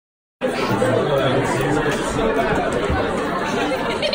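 Silence, then about half a second in, loud crowd chatter cuts in abruptly: a group of young people talking over one another.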